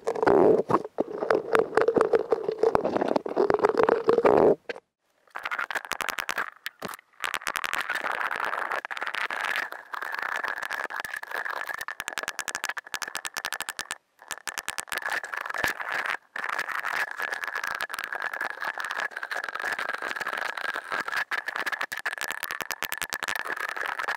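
Carving tool working into a wooden skull relief pattern, a steady buzz laced with rapid rattling clicks. The pitch rises after a brief cut-off about four and a half seconds in, and it drops out briefly a few more times.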